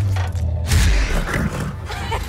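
Film trailer sound effects: a deep rumbling drone with a loud crash about three-quarters of a second in.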